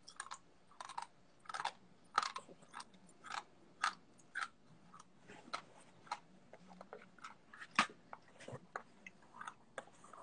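Someone chewing a hard, stale piece of old trading-card pack gum in the mouth, with irregular crunches about one to two a second as the brittle gum breaks up.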